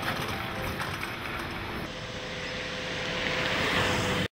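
Road and wind noise of a moving car: a steady rushing hiss over a low rumble, growing slightly louder near the end.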